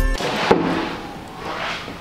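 An apartment front door being pushed open: a single sharp knock about half a second in, followed by rustling and handling noise that fades away.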